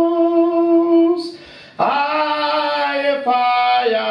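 A man singing unaccompanied into a microphone, holding long drawn-out notes. There is a short break about a second and a half in, before a new held phrase.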